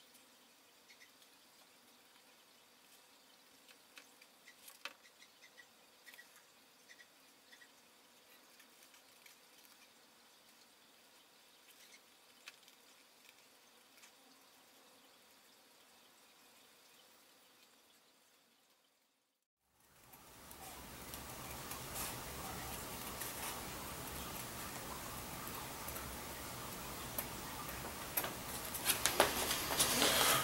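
Leather scissors snipping through leather: faint, scattered snips. About two-thirds through, a steady hiss comes up, with light clicks and rustles of the leather pieces being handled near the end.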